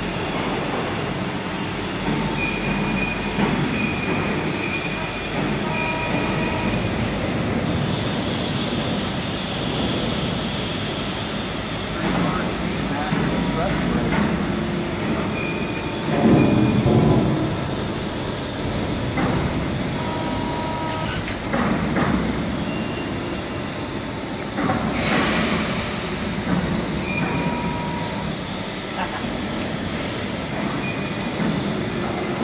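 Steady machinery noise in a large, echoing factory hall, with short whining tones that come and go and a few louder knocks, the loudest about 16 seconds in.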